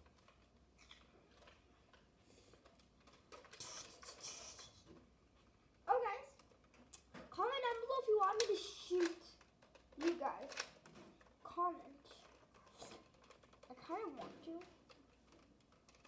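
Plastic clicks and clacks from a toy foam-dart blaster being worked by hand, the sharpest about six seconds in, with a short hiss a few seconds in. A child's voice makes sounds or mumbles in the second half.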